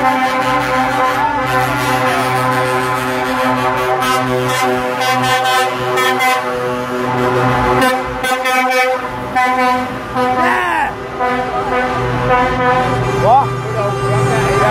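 Lorry air horns sounding long, held blasts that overlap and change pitch a couple of times, as trucks in a convoy drive past.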